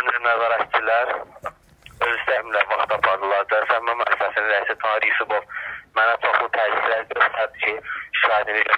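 A man speaking Azerbaijani without a break, in a thin, phone-quality voice recording.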